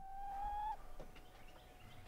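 Chicken calling: one held note, slightly falling, for under a second, then trailing off faintly.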